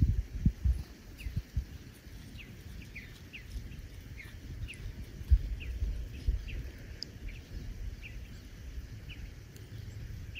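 A small flock of bluebirds calling: short, faint, downward chirps, about two a second. Underneath is a low rumble with a few dull thumps, loudest in the first second.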